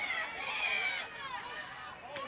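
Spectators' raised voices shouting during a football play: several high-pitched voices overlap, loudest in the first second, then easing off.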